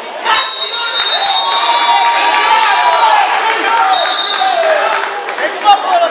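Shouting from spectators and coaches in a gym during a wrestling bout. A high steady squeal runs for about two seconds and comes back briefly about four seconds in. A sharp thump near the end is the loudest sound.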